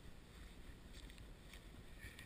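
Near silence: a faint low rumble of wind on the camera's microphone.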